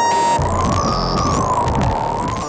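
Modular synthesizer electronic music: a tone wavers slowly up and down in pitch, about once every two seconds, while a high whistle sweeps the opposite way, over low held notes and a noisy texture. A short buzzy chord sounds at the start.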